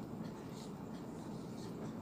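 Faint, steady background hiss with no distinct events: room tone.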